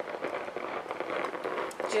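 Home Touch Perfect Steam Deluxe garment steamer putting out steam through its handheld head as it is drawn over dress fabric: a hiss with irregular crackling.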